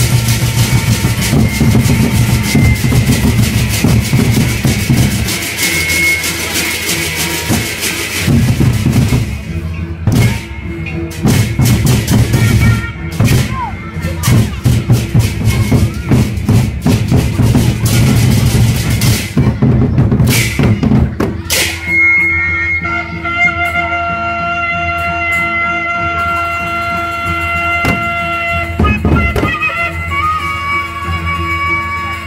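Sasak gendang beleq ensemble playing: large barrel drums beaten in a dense, driving rhythm. About twenty seconds in the drumming stops, and steady held tones at several pitches carry on.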